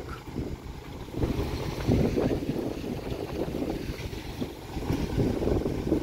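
Wind gusting on the microphone over a farm tractor's engine running as it pulls a cultivator through the field; the rumble rises and falls with the gusts.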